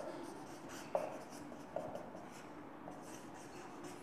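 Marker pen writing on a whiteboard: faint strokes with a few short, sharper strokes about a second apart.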